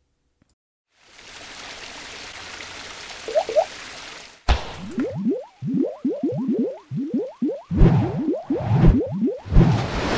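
Logo-animation sound effects. About a second in, a whoosh of noise swells up and holds for about three seconds. Then a sharp hit sets off a quick run of rising bloops, a few a second, with deeper thuds near the end.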